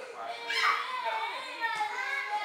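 Young children's voices calling and chattering during play, with a loud high-pitched child's call about half a second in.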